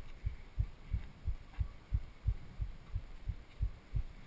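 Skateboard rolling over paving, its wheels thudding over the joints about three times a second.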